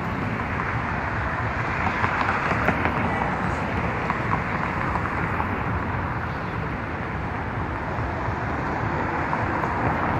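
Steady outdoor city noise: a continuous hum of traffic, with no single vehicle standing out.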